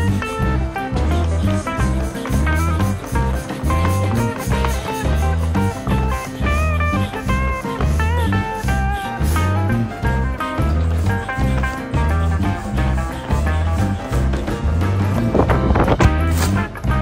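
Background music: a guitar tune over a steady bass beat, with a brief whoosh near the end.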